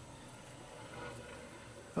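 Faint, distant helicopter drone over quiet room tone, swelling slightly about halfway through.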